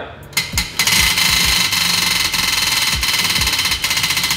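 A tabletop prize wheel spinning, its pointer flapper clicking against the pegs. It starts with a few separate clicks as the wheel is pushed, then runs into a fast, dense clatter.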